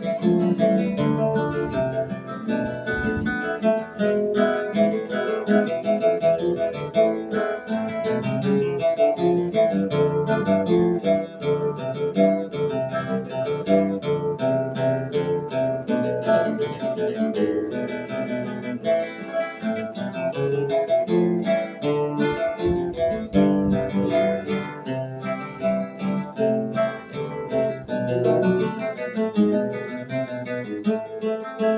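Two nylon-string classical guitars playing a hymn tune together as an instrumental duet, with continuous plucked notes and chords.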